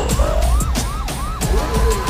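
Police siren in a fast rising-and-falling yelp, about five sweeps in two seconds, over deep bass rumble and sharp impact hits.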